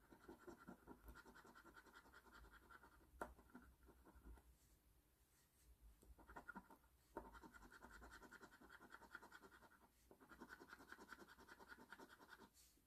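Faint, rapid back-and-forth scraping of a coin on a scratch-off lottery ticket, rubbing off the latex coating. It comes in several runs with short pauses between them.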